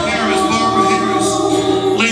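A man singing a slow gospel song into a microphone, holding long, steady notes.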